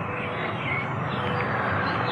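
Steady rushing outdoor background noise, growing slowly louder, with a brief faint high chirp about a third of the way in.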